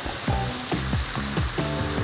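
Beef short ribs and vegetables sizzling in a hot pan as thick Korean beef sauce is poured over them, a steady frying hiss, over background music with short plucked notes.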